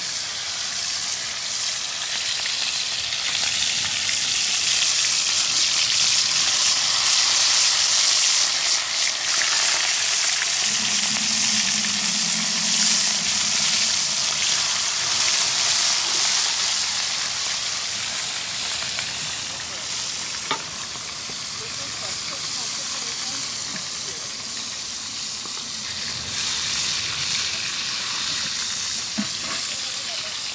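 Fish frying in a pan of hot oil, a steady sizzle that is loudest in the first half and eases off later. A sharp click sounds about twenty seconds in.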